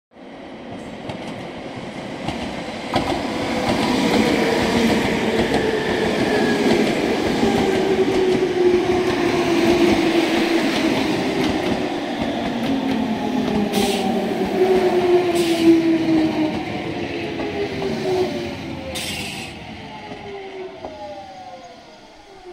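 Nankai 2000 series electric train pulling in and braking to a stop: wheels running on the rails under a motor whine that falls steadily in pitch as the train slows. A few brief hisses come near the end, and the sound fades as it halts.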